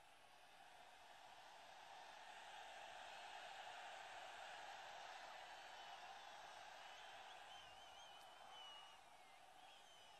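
Very faint, distant noise of a large rally crowd, swelling a little and fading again, with a faint wavering high tone near the end.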